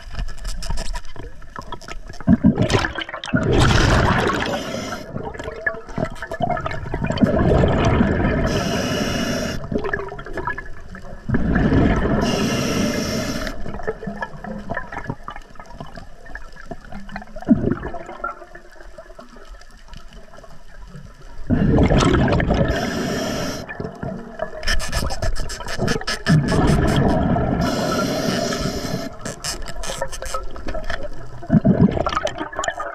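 A diver breathing through an Atomic scuba regulator underwater: each exhale is a loud burst of rumbling, gurgling bubbles, and some breaths carry a short high hiss from the regulator. There are about five breaths, a few seconds apart.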